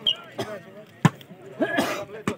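Volleyball struck by hand: a sharp smack about a second in, with a softer knock before it, among the voices of players and onlookers.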